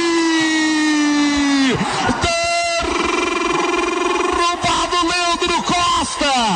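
A football commentator's long, drawn-out shout calling a penalty, held on one vowel with the pitch slowly sinking, breaking off a little under two seconds in. A second shorter held shout follows, then quick speech near the end.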